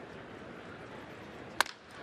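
Crack of a wooden bat squarely hitting a fastball, one sharp crack about one and a half seconds in, the hit that goes for a home run. Under it, the steady murmur of a ballpark crowd.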